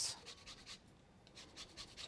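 Fine rasp grater scraping lemon zest off a lemon: faint, quick scraping strokes in two short runs.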